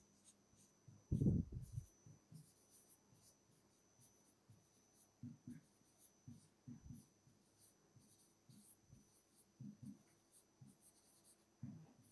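Pen writing on a board: faint scratching and light, irregular taps as the strokes are made, with one louder dull knock about a second in.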